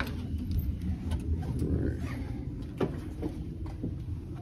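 A cruise-ship cabin door being pulled shut: a few clicks and knocks from its handle and latch over a low rumble of handheld-camera handling.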